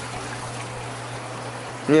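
Reef aquarium's water circulation: a steady rush of flowing, trickling water from the tank's pumps and overflow, with a low steady hum underneath.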